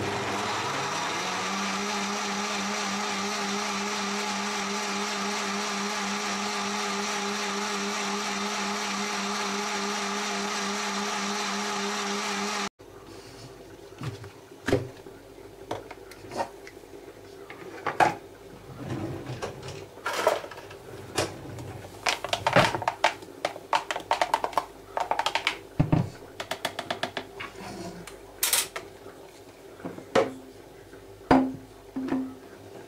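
Bosch kitchen machine's blender blending orange pieces and water. The motor spins up with a rising hum in the first second, then runs steadily until it stops abruptly about halfway through. After that come scattered light knocks and clinks as the plastic blender jug is handled on the counter.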